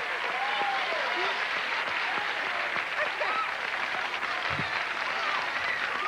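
Television studio audience applauding steadily, with voices calling out over the clapping.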